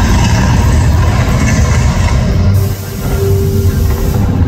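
Show soundtrack over the arena's loudspeakers: dramatic music with a deep, loud rumbling effect underneath, dipping briefly about two and a half seconds in.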